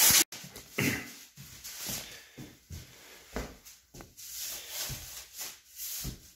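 Thin clear plastic floor sheeting crinkling and rustling in short, irregular bursts as it is handled and moved on.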